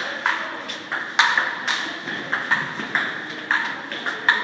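Table tennis rally: the plastic ball clicking sharply off the Joola table and the paddles, about two to three hits a second, each with a short ring.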